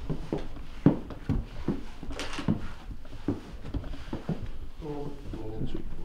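Hard-soled shoes stepping on wooden floorboards, a string of uneven knocks as someone walks slowly along a line, with quiet voices in the room and a voice rising near the end.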